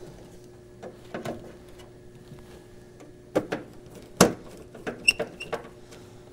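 Scattered clicks and knocks of a screwdriver and hands on the mounting screws and metal chassis of a jukebox amplifier as it is tightened in place. The sharpest knock comes about four seconds in and a few lighter clicks follow, over a faint steady hum.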